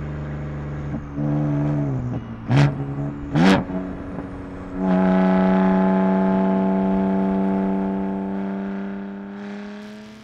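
BMW M4's twin-turbo inline-six engine revved in two quick, sharp blips, then running at a steady drone that sinks slightly in pitch and fades away near the end.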